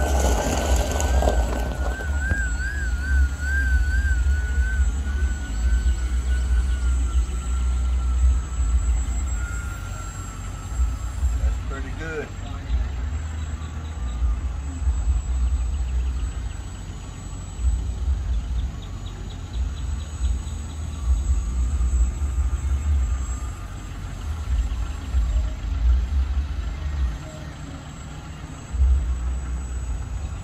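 Radio-controlled model Fokker triplane in flight, its motor and propeller a thin, steady whine that wavers in pitch as the plane turns, then drops a little and fades as it flies farther off. Wind rumbles on the microphone in gusts.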